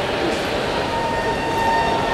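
Commuter train running: a steady rumble with a thin, high whine on top.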